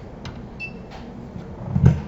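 A few faint clicks over quiet room noise, then a dull low thump near the end.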